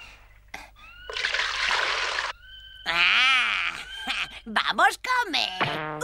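About a second in, water splashes for about a second. Then come wordless cartoon voice sounds: a wavering, quavering cry, then short mumbling noises.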